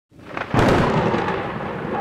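Thunderclap sound effect with rain: a rising rumble, a sudden loud crack about half a second in, then sustained rolling rumble.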